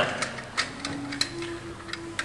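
A run of light, irregular clicks and taps, several a second, from things being handled on a lab bench, over a faint steady hum.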